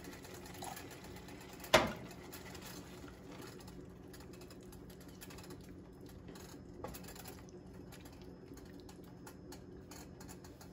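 A sharp knock about two seconds in as the plastic cup is set down, then a wooden spoon stirring thick curry in a pot, with small scrapes and a click, over a steady low hum.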